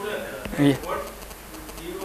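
Speech only: a man says a short "yeah".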